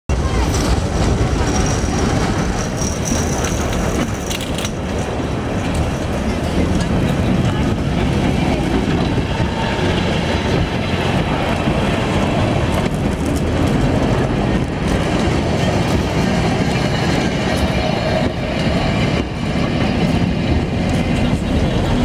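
Historic tram and its second car rolling past slowly on street track, wheels clicking over rail joints and points, with a crowd chattering.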